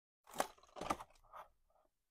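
A plastic DVD case handled and turned over in the hand: three or four short scrapes and clicks over about a second and a half.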